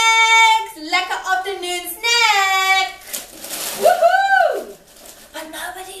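A woman's high-pitched excited voice: a few drawn-out, sing-song exclamations whose pitch rises and falls, the longest about a second each, with no clear words.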